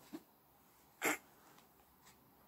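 A person's single short, breathy laugh through the nose, about a second in.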